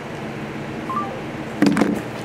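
Steady low room hum with two faint short beeps from a smartphone about halfway through, the second lower, the phone's tone as the call ends. Near the end, a brief louder knock of handling noise.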